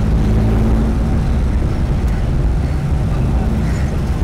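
Car engine and road noise heard from inside a moving car's cabin: a steady, loud low drone.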